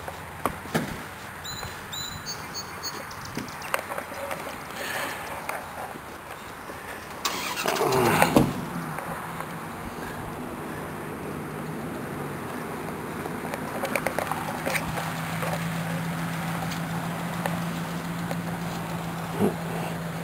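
A motor vehicle engine nearby, picking up loudly with a changing pitch about seven seconds in, then running on as a steady low hum.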